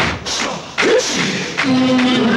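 Telugu film song music: a passage with loud, repeated folk drum beats under a held melodic line.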